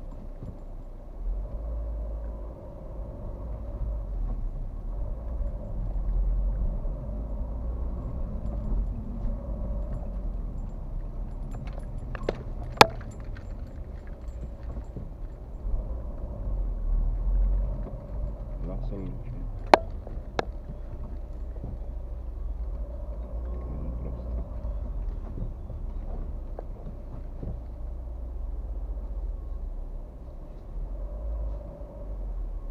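Low, steady road and engine rumble inside a car's cabin while driving in city traffic, with a couple of sharp clicks about 13 and 20 seconds in.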